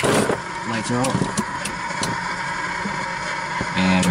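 Steady drone of a Cessna 172's engine idling, heard inside the cockpit, with brief muffled voices over it.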